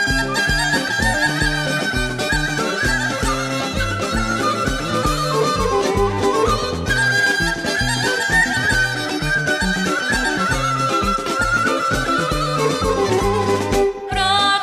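Instrumental Bulgarian folk dance music for a horo: a high, ornamented melody over a steady, quick beat of about three strokes a second.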